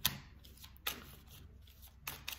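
Tarot cards being handled: two short, sharp snaps of the cards about a second apart, with faint rustling between.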